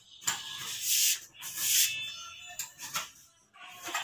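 Rough scraping and rubbing in two long strokes, each under a second, then fainter short scrapes, from hands and wiring worked at a downlight hole in a plasterboard ceiling.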